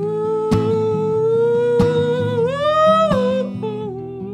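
A male singer holds one long wordless note that steps up in pitch about two and a half seconds in, over strummed acoustic guitar chords.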